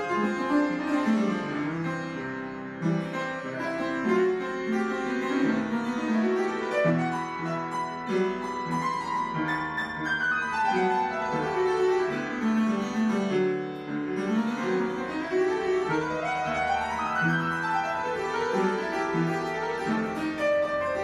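Upright piano played solo: a busy passage of many notes with runs climbing and falling across the keyboard.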